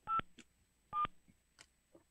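Touch-tone telephone keypad tones as a number is dialed: two short beeps about a second apart, each a pair of pitches sounding together.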